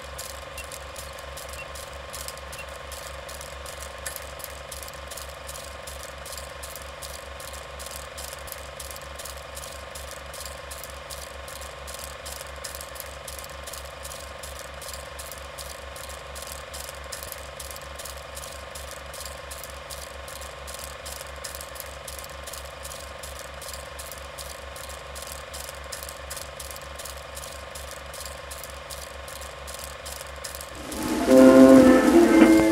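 A mechanism clicking steadily and rhythmically, about three clicks a second, over a constant low hum.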